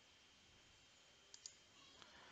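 Near silence: room tone, with two faint, quick clicks about one and a half seconds in.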